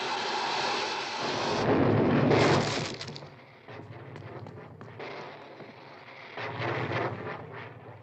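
Cartoon whirlwind sound effect as a character spins up and blasts away: a loud rushing whoosh that builds to a crashing blast a couple of seconds in, then dies to a lower rumble that swells once more near the end.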